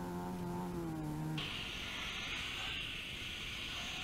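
Rally car engine running at steady revs as the cars pull away up the stage road. About a third of the way in the engine note cuts off abruptly, leaving a steady hiss.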